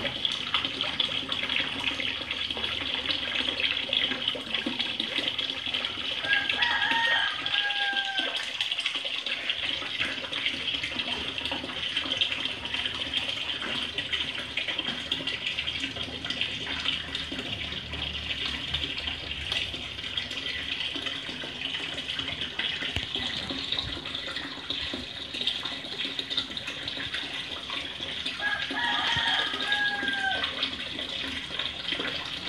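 Steady running, splashing water in a garden fish pond, a constant hiss throughout. A short pitched call sounds twice over it, about seven seconds in and again near the end.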